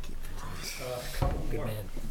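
Low, indistinct talk in a meeting room with papers being handled, and one sharp knock just past a second in.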